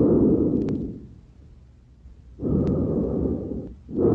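Vesicular breath sounds heard through a stethoscope on a young man's back: a soft rushing with each breath, two breaths about two seconds apart with a quiet pause between. They are the breath sounds of a lung after a drained spontaneous pneumothorax, and they now seem symmetric.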